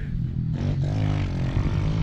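Pit bike engine running with a steady, slightly wavering note.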